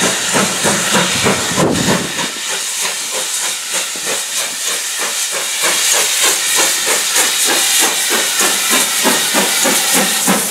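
GWR Manor class 4-6-0 steam locomotive No. 7820 'Dinmore Manor' hauling a passenger train past, its exhaust beating in a quick, even rhythm over a steady hiss of steam.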